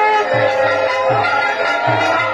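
Bengali evening arati kirtan music: long held instrumental tones over a steady low drum beat of about three strokes a second.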